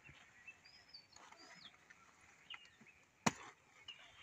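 A single sharp snap about three seconds in, as a knife cuts into a cauliflower plant, over faint outdoor background with a few short bird chirps.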